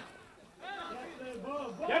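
Men's voices calling out across a football pitch, players shouting to teammates. A louder shout of 'gyere' ('come on') comes near the end.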